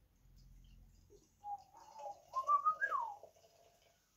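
Dark ale being poured from a can into a glass: faint at first, then from about a second and a half in a pitched glugging that rises and falls in pitch as air gulps back into the can.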